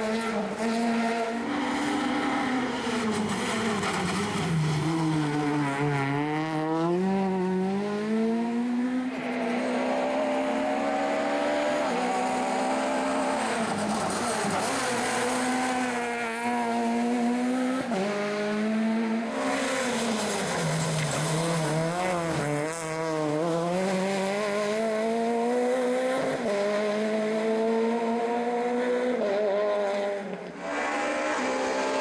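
Rally car engine under hard driving, its pitch climbing and dropping back again and again as it accelerates, brakes and changes gear, with deep drops about a sixth of the way in, past the middle, and near the end.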